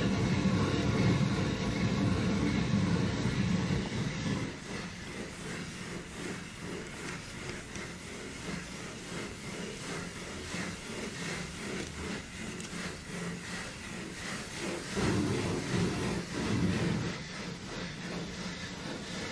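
Probe in its plastic calibration vessel being swirled by hand to stir the fluoride calibration solution while the electrode reading stabilises: a continuous rumbling, rubbing slosh, louder in the first few seconds and again near the end.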